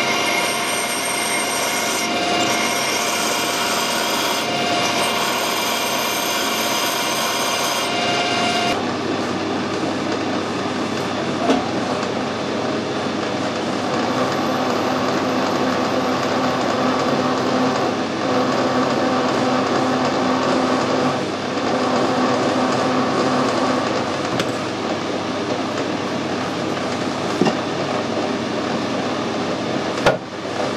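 Metal lathe running steadily with a drill boring into a spinning brass workpiece, then a quarter-inch reamer fed through the drilled hole. The sound changes abruptly about nine seconds in, losing its highest whine.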